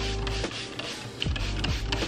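Trigger spray bottle misting water onto hair in a series of quick hissing sprays, over background music.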